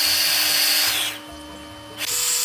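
Ion Luxe 4-in-1 Autowrap Airstyler blowing air through its styling barrel, a rushing airflow with a high motor whine, which drops much quieter about a second in.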